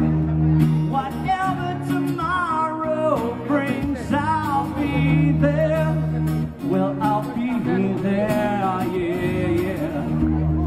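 Acoustic guitar strummed with a man singing a melody over it.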